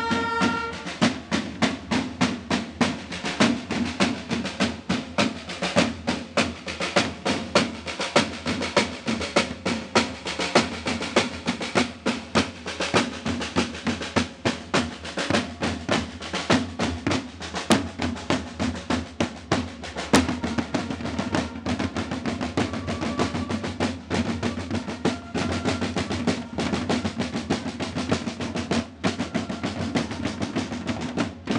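A marching corps of side drums beaten with sticks, playing a steady, dense rhythm with rolls. A trumpet fanfare ends about a second in.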